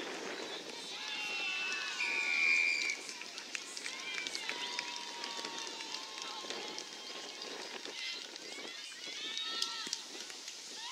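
Players and onlookers calling and shouting across an open football oval, many overlapping voices, with one loud, high held call about two seconds in.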